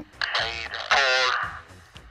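A person's voice in two drawn-out, wavering sounds, the second longer, over background music.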